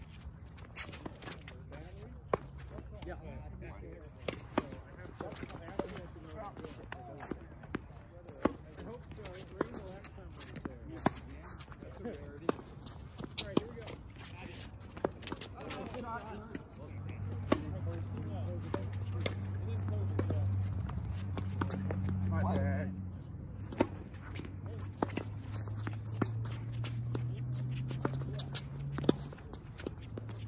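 Tennis balls struck by rackets and bouncing on a hard court in a doubles rally: sharp pops about every second or so. Faint voices run underneath, and a low hum grows louder in the second half and rises in pitch near the end.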